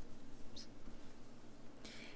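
Faint, even handling noise of yarn and a crochet hook being worked through the stitches of a stuffed crocheted piece, with a brief soft sound near the end.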